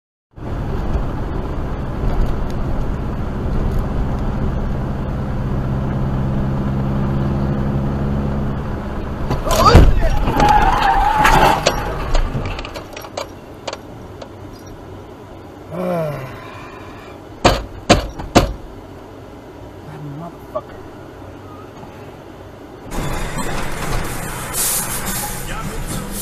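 Dash-cam audio from inside a car: an engine running steadily, then a loud crash impact just before ten seconds in, with clatter after it. Later come a few sharp knocks, and then steady road noise.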